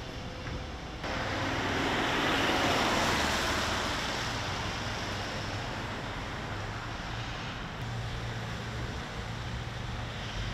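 Street traffic noise: a passing vehicle's tyre and engine noise swells about a second in and slowly fades. A steady low hum comes in near the end.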